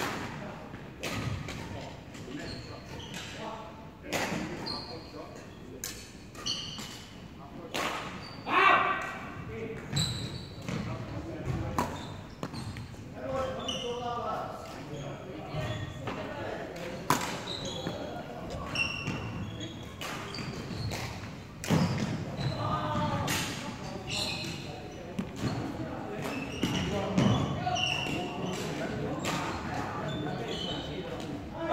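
Badminton rackets striking shuttlecocks: sharp, irregular hits, a few seconds apart or less, echoing in a large hall, with voices in the background.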